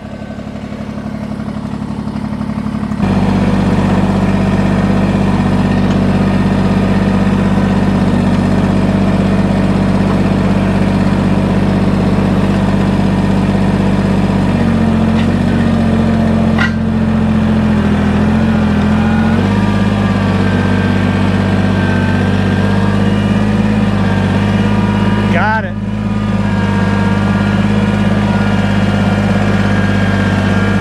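Kubota BX23S sub-compact tractor's three-cylinder diesel running close by at steady high revs while its loader grapple works a large rock out of the ground. The engine note shifts for several seconds midway as it takes load, and dips briefly near the end.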